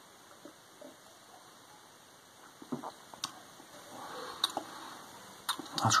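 Faint sounds of a man drinking beer from a glass: mostly quiet room tone, then soft sips, swallows and small mouth clicks with a breath out.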